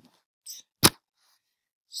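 A single sharp click a little under a second in, preceded by a faint short hiss about half a second in.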